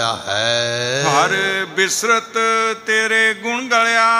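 A man's voice chanting a line of Gurbani in long, held, wavering notes, in the sung style of katha recitation.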